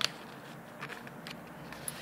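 A sheet of white paper being folded and pressed flat by hand, with faint rustling and a few light clicks and taps of the paper against the table.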